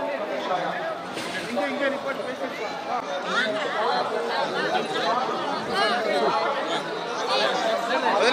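Crowd chatter: many people talking at once, their voices overlapping so that no single speaker stands out.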